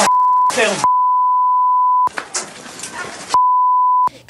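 A steady, pure beep tone of about 1 kHz, sounded three times, the kind of censor bleep laid over footage to mask words. A person's voice and noisy sound come through briefly between the bleeps.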